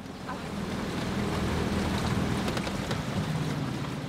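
Small boat's motor running steadily, a low wavering hum, with wind and water noise.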